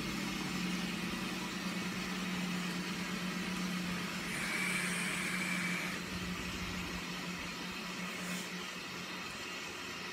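A washing machine running with a steady hum. From about four to six seconds in, a soft hiss of air as a vape is drawn on.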